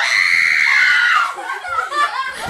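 A girl's long, high-pitched scream of surprise lasting just over a second, then fading into laughter.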